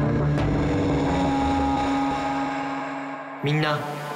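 Low sustained trailer drone of held tones, with a short sharp hit about half a second in; the drone fades away and ends around three and a half seconds in, when a man starts speaking.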